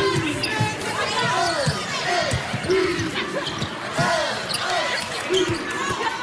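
Basketball dribbled on a hardwood court, a series of short bounces, in a large arena hall with voices around it; a brief laugh at the start.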